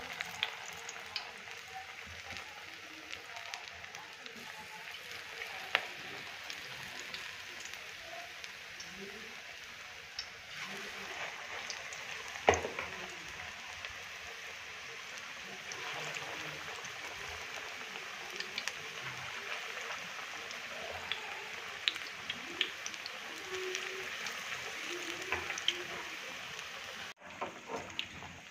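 Gram-flour pakora batter deep-frying in hot oil in a frying pan, sizzling and crackling steadily. A few sharp clicks stand out, the loudest about twelve seconds in.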